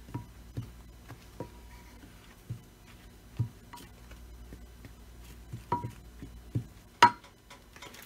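Silicone spatula stirring a dry flour mix in a glass baking dish: scattered soft taps and scrapes, some with a brief ringing clink from the glass, and one sharper knock about seven seconds in.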